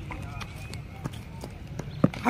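Footsteps on brick paving: a regular run of light, sharp taps about three a second, with faint voices in the background.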